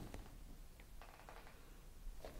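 Near silence: quiet room tone, with a faint brief rustle about a second in.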